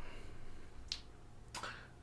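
Quiet room tone in a pause, with a single short, sharp click about a second in and a brief soft rustle of sound a little after.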